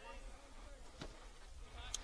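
Quiet open-air ballfield ambience with a low rumble: faint distant voices just at the start and a single faint click about a second in.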